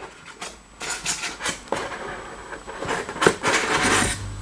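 Polystyrene foam insert being worked loose and lifted out of a cardboard box: rubbing and scraping with a string of short knocks, busier near the end.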